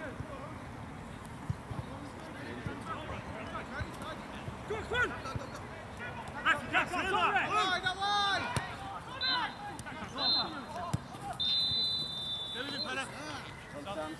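Players shouting across an open football pitch, loudest in the middle, followed by a referee's whistle: two short blasts, then one longer blast of about a second and a half near the end.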